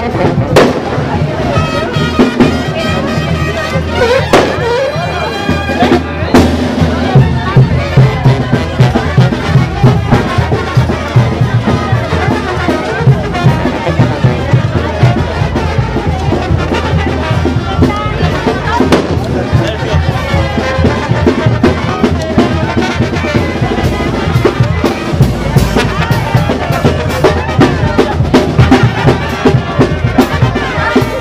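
Brass-and-drum band music playing loudly over the chatter of a crowd, with a few sharp cracks in the first several seconds.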